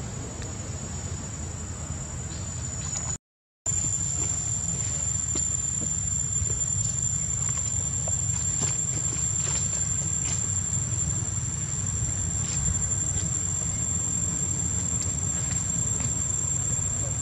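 Steady, high-pitched drone of insects such as crickets or cicadas over a constant low rumble, with a few faint ticks. The sound drops out completely for a moment about three seconds in, then returns a little louder.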